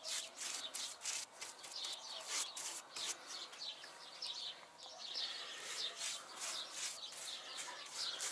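Paintbrush strokes laying acrylic paint onto a plywood bee swarm trap: faint, irregular brushing and rubbing on wood, with birds chirping in the background.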